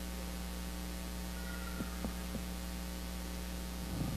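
Steady low hum of a quiet room, with a few faint soft clicks about two seconds in.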